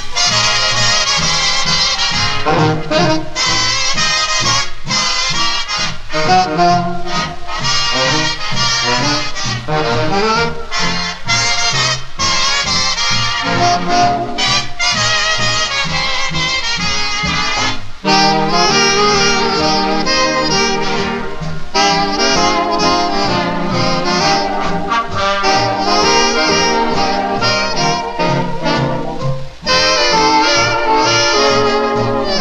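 1940s swing big band playing an instrumental passage with the brass to the fore and no singing. There is a brief break about eighteen seconds in as a new section begins.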